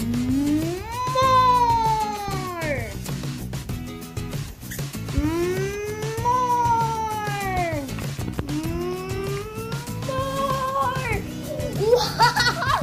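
Three long, drawn-out wails, each rising and then falling in pitch and lasting two to three seconds, over steady background music.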